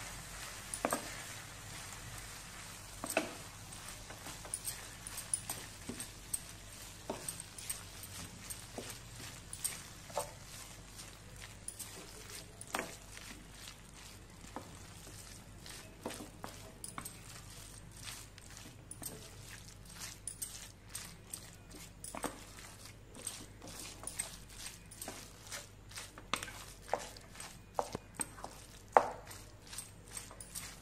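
Wooden spatula stirring and scraping raw beef mince through onion-tomato masala in a nonstick frying pan, with irregular taps and knocks against the pan, the loudest near the end, over a faint sizzle.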